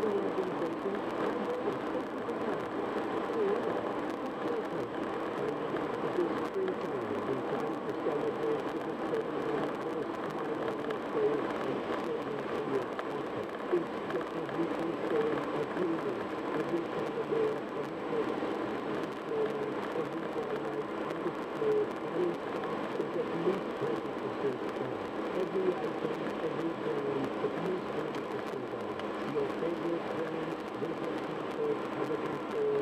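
Steady road and tyre noise of a car cruising at highway speed, heard from inside the car.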